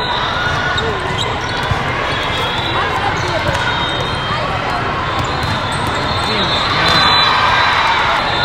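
Din of a large, echoing sports hall during volleyball play: many voices talking and calling, with balls being struck and bouncing and a few sharp impacts.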